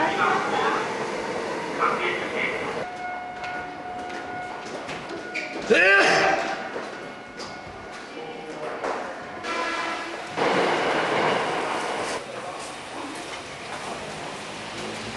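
Electric commuter train at a station platform: a steady hum, then a short loud horn blast that rises in pitch about six seconds in, amid station voices and noise.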